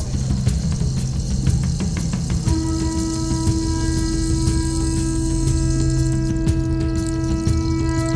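Background music comes in about two and a half seconds in, a long held note with a light ticking beat, laid over the low rumble of a minibus and street noise.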